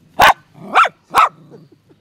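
Small mixed-breed dog barking three times, about half a second apart, the first bark the loudest.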